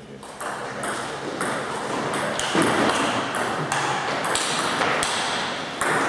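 Table tennis ball being struck back and forth in a fast doubles rally: sharp pings from bats and bounces on the table, about two a second, with players' feet moving on the wooden floor.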